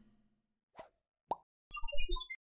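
Cartoon-style plop sound effects of a logo animation: two short plops about a second in, the second rising quickly in pitch, then a quick run of bright chirping notes starting near the end.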